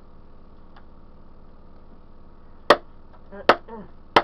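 Two sharp whacks about a second apart near the end, from a long pole swung down onto a Barney dinosaur toy on the floor. Each whack is followed by a short falling tone. Before them there is only low background.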